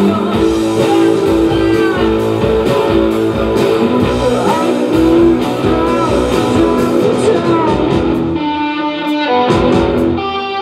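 Live rock band playing loudly: electric guitars, bass and drums. Near the end the drums drop out for about a second while the guitar chords ring on alone, then the full band comes back in.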